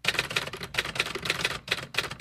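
Typewriter sound effect: a quick, uneven run of key clicks, several a second, keeping time with on-screen text being typed out letter by letter.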